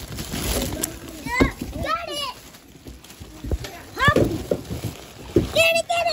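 Plastic packaging crinkling and rustling as an inflatable Santa decoration is pulled from its plastic bag and cardboard box, loudest in the first second. Short high-pitched children's calls come in several times over it.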